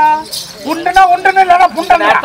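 Speech only: a person talking, with a short pause about half a second in.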